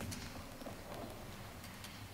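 A few faint, scattered knocks and footfalls from people shifting in wooden church pews, over a low steady hum in a large, quiet room.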